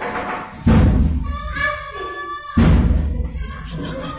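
A classroom door banged on hard from outside: two heavy thuds about two seconds apart, each dying away over a second or so, with children's voices between them.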